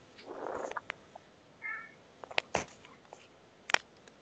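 A short soft rush of noise, then a brief high-pitched call with a clear pitch, followed by a few sharp clicks.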